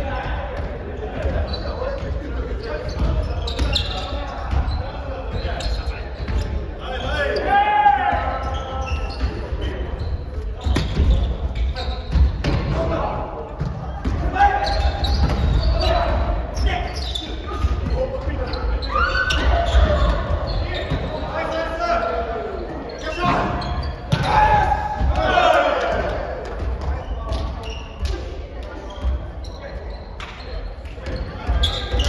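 Volleyball players calling out to each other in a large gymnasium, over the repeated thuds of a volleyball being struck by hands and arms and bouncing on the wooden floor.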